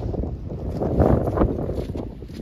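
Strong wind blowing across the microphone, a loud, gusty rush that peaks about a second in.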